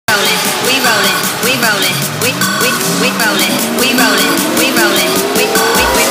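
Electronic dance-remix intro: short swooping, pitch-bent sounds repeat over a steady ticking hi-hat, while a tone rises slowly through the second half. A low boom comes just before the end.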